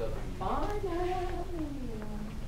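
A single drawn-out vocal sound that rises in pitch, then slowly falls over about a second and a half, over a low room hum.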